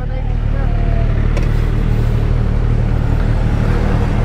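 Motorcycle engines idling, a steady low drone.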